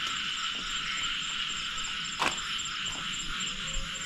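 Steady night chorus of insects, a continuous high chirring, with one sharp click a little over two seconds in.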